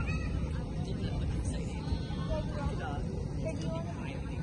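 Faint high voices and squeals from people on a rocking-horse ride, over a steady low rumble.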